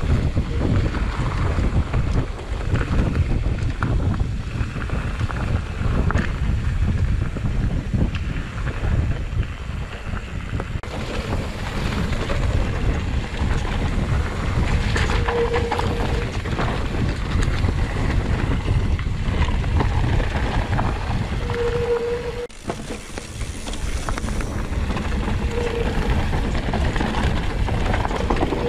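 Wind buffeting the microphone of a mountain bike's handlebar camera on a descent, mixed with the tyres rolling over a dirt trail. A few short, low tones come through in the second half.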